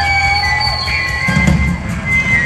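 Live rock band playing, heard loud from the audience: several held notes ringing over a steady low rumble of bass and drums.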